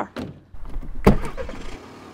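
A car door opening with a click and then slammed shut with a loud thump about a second in, over a low rumble.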